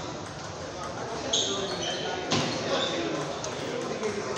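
Table tennis balls clicking off bats and tables, a few sharp ball hits with a short bright ping, the loudest about a third and just past halfway through, over people talking in a large echoing hall.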